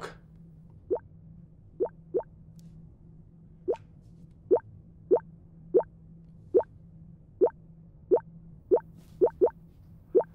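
Phone notification pings: short blips that rise in pitch, about one a second, coming faster near the end. Each is a new 'liked your photo' alert.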